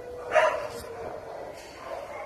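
A dog barks once, a short, loud bark about half a second in.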